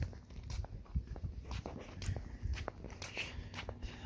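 Footsteps on a concrete sidewalk at a walking pace: a string of light taps and scuffs over a low rumble.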